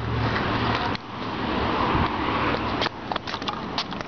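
Skateboard wheels rolling over paving: a steady rolling noise, with a few sharp clicks near the end as they cross joints in the pavement.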